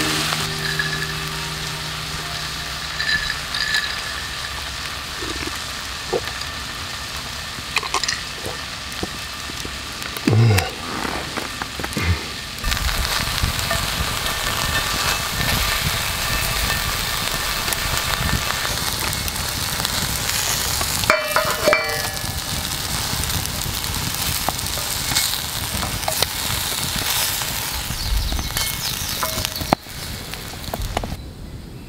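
Cubes of meat sizzling steadily in an oiled wrought-iron Turk frying pan over a campfire, with a few taps and scrapes from wooden chopsticks turning the pieces.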